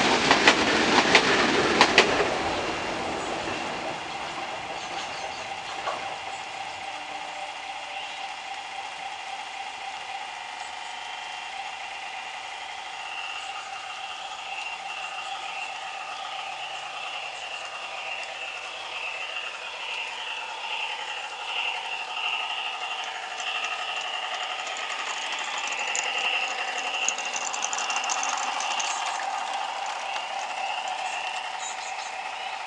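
Sound module in an LGB garden-railway model diesel locomotive playing a small diesel engine sound through its little loudspeaker as the model runs, a steady, wavering engine tone. It sounds like a small one- or two-cylinder engine and does not yet suit the locomotive: the new sound panel still needs adjusting. A louder rattle fills the first two seconds.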